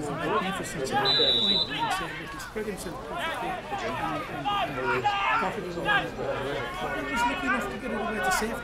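Several people talking at once, with overlapping voices of players and onlookers, plus a brief high steady tone about a second in.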